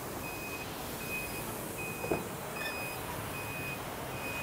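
A high-pitched electronic beep repeating evenly about once every three-quarters of a second, over steady street-traffic noise, with a short click about halfway through.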